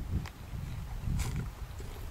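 A person biting into a ripe, juicy white-fleshed peach and chewing it, in two short spells about a second apart.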